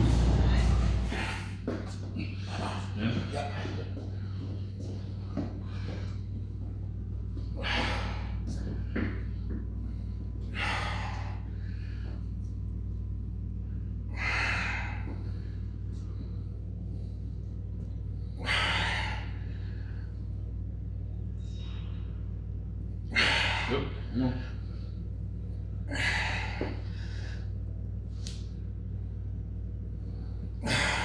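Forceful breaths and grunts from a lifter straining through heavy dumbbell press reps, one every three to four seconds, over a steady low hum.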